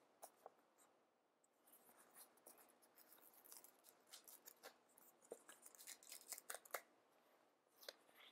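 Faint crinkling and ticking of a paper sticker sheet being handled, as stickers are peeled off their backing. There are many small crackles, thickest in the middle of the stretch.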